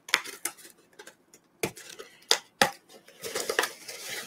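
Several sharp clicks and taps with light rustling as a cardboard box is opened by its pull tab and its packaging is handled.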